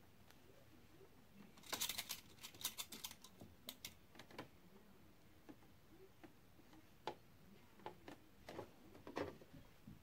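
Faint light clicks and rustling from fabric and pins being handled by hand, with a quick flurry of clicks about two seconds in and a few single clicks later.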